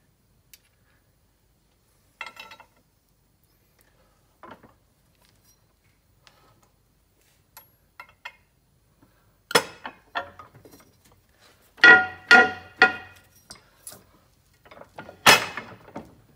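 Small steel crankshaft parts clinking and clanking against a steel press plate while a crank is pressed apart: a few light ticks, then a sharp metallic clank about nine and a half seconds in, three ringing clinks close together a couple of seconds later, and another loud clank near the end.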